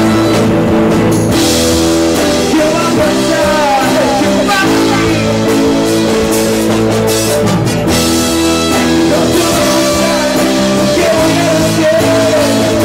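A live rock band playing loudly and steadily: electric guitars, drum kit and keyboard, with singing.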